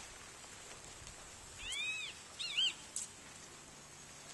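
A high animal call: one arched call that rises and falls, then a quick wavering run of two or three shorter calls, over a faint steady hiss.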